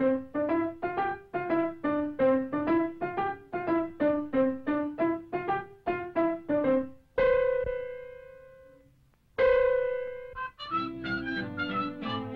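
Piano notes struck one at a time in a bouncing alternating pattern, about three a second. Then come two single long notes that ring out and fade, and near the end a busier passage with several notes sounding together.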